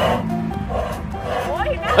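A voice exclaiming an amazed "wow" (โอ้โห) near the end, over background music.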